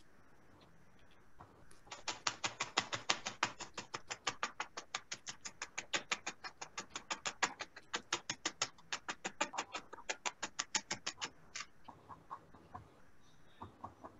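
Felting needle stabbing rapidly and evenly into wool on a foam pad, about six pokes a second, starting about two seconds in and stopping suddenly near eleven seconds, with a few fainter pokes after.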